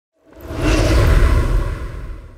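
Whoosh sound effect with a deep rumble for an animated logo intro, swelling up from silence a quarter second in and starting to fade near the end.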